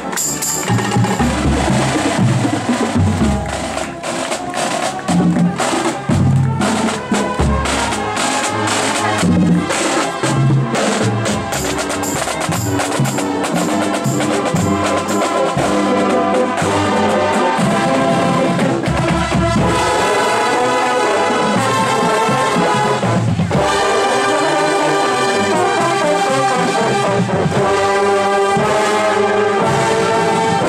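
A marching drum and bugle corps. The drumline plays a cadence on pitched marching bass drums and snares, and about halfway through the brass section comes in with sustained chords over the drums.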